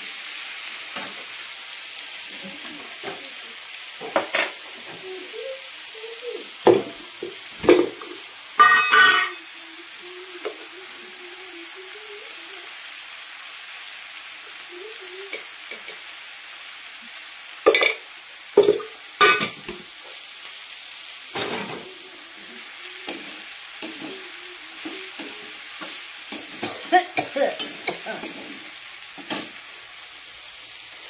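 Chopped green vegetables frying in a metal wok on a gas stove: a steady sizzle. Over it, a metal spatula scrapes and clanks against the pan at irregular moments as they are stirred, in short clusters with the loudest around nine seconds in and again around eighteen to nineteen seconds.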